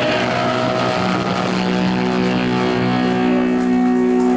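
Live punk rock band's electric guitars holding a loud, steady chord that rings on without singing: the closing chord of the song.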